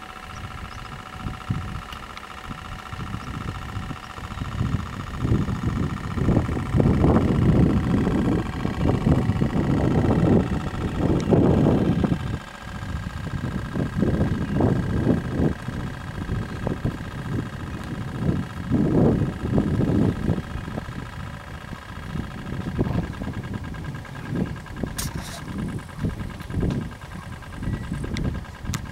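A steady motor hum with several fixed tones, under irregular gusts of low rumble that are loudest from about six to twelve seconds in.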